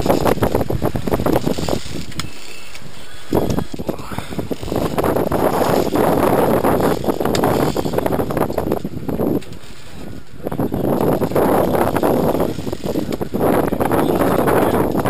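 Heavy saltwater fishing reel being cranked against a fish on the line, its gears giving a fast, continuous rattling click. The cranking stops briefly about two seconds in and again near ten seconds.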